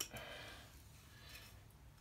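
Near silence, with faint handling sounds of a piston ring being rolled into its groove on an 85 mm piston.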